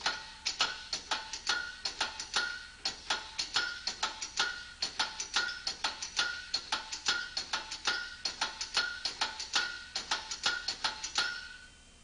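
Spider assembly of a Liftomatic LOM04 drum handler being pulled up and pushed down by hand over and over, its steel paws and housing clicking and clinking about three to four times a second, many clicks with a brief metallic ring, stopping near the end. The parts move freely without binding.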